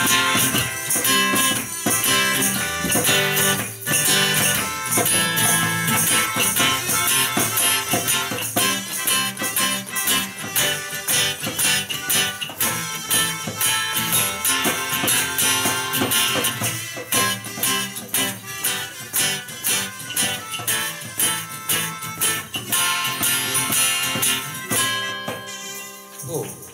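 Acoustic band playing an instrumental outro: acoustic guitar strummed in a steady rhythm with a hand drum, percussion and a melodica, with no singing. The playing stops about a second before the end.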